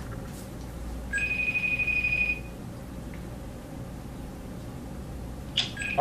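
A phone call's single electronic beep: one steady high tone starting about a second in and lasting about a second and a half, on a call that goes unanswered. A low steady hum runs underneath.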